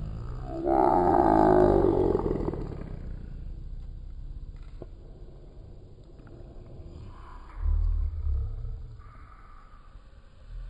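A loud, drawn-out animal cry with a rough, roar-like tone about a second in, lasting about two seconds and trailing off. A short low rumble follows near the end.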